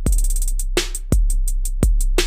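Native Instruments Maschine drum-kit pattern looping, with kick drum hits. Over it runs a rapid roll of repeated drum hits, about seven a second, played live on a pad with the note repeat feature.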